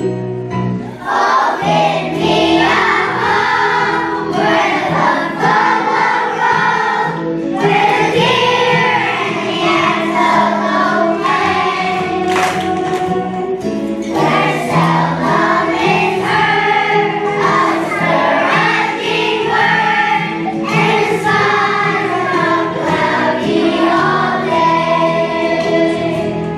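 A choir of first-grade children singing a song together over an instrumental backing track, the voices coming in about a second in.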